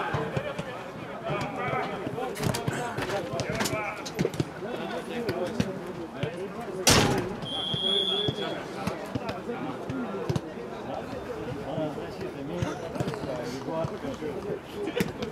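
A football kicked hard once, a single sharp thud about seven seconds in, amid players' voices calling across an outdoor pitch.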